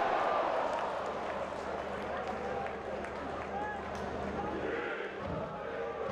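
Football stadium crowd ambience: a steady murmur of spectators with a few faint distant shouts.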